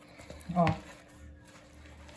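A hand kneading crumbly pão de queijo dough of sweet polvilho and cheese in a plastic bowl, a faint squishing and rubbing. A woman says a short "Ó" about half a second in.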